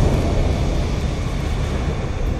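Low rumbling tail of a fiery boom sound effect in an animated logo reveal, dying away steadily.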